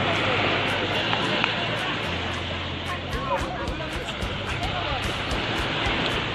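Many voices of people bathing in the sea, calling and chattering at a distance, over a steady wash of small waves breaking on the beach.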